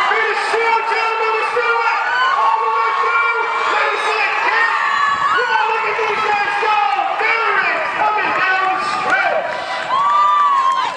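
A small crowd of spectators shouting and cheering runners on, several raised voices overlapping.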